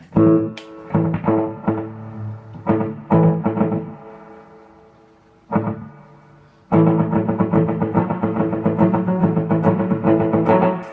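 Electric archtop guitar played through a Strymon Deco pedal set for slapback echo: a few strummed chords that ring out and fade, then continuous quick picking from about seven seconds in.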